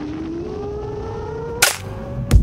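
Break in a dubstep track: the beat drops out, leaving one slowly rising synth tone over a hiss, cut by a single sharp hit about one and a half seconds in.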